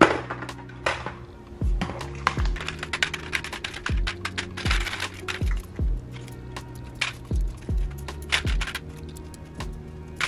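Metal hair clips clinking and clicking against each other as they are handled by the handful and dropped into a plastic container, many small sharp clicks throughout. Background beat music with deep kick drums plays underneath.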